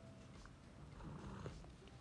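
Near silence: faint store background noise, with a brief soft stir and a few light clicks about a second in.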